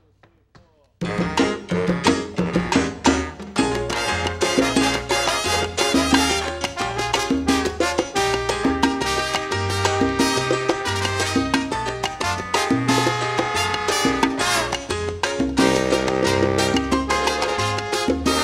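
A live salsa band starts suddenly about a second in and plays on loudly, with keyboard and a trombone section among the instruments.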